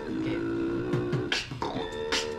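A beatboxer sings a melody with the voice and mouth in steady, held notes that step from one pitch to the next, trying out the melody for a drum-and-bass beat. About a second and a half in there is one sharp mouth-made percussive hit.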